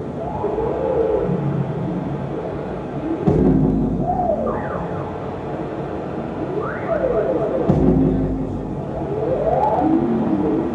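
Live electronic noise music played through effects pedals whose knobs are being turned by hand: a dense drone with pitched tones gliding up and down, and a low thud that comes back about every four and a half seconds.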